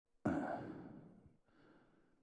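A man sighing into a handheld microphone held at his mouth: one loud exhale that starts suddenly and fades over about a second, followed by a fainter breath near the end.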